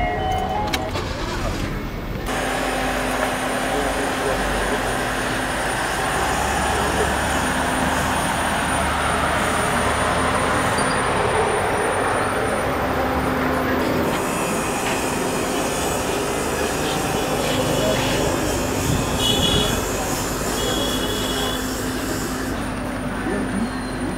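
Steady vehicle and traffic rumble with indistinct voices in the background; the sound changes abruptly about 2 seconds in and again about halfway through.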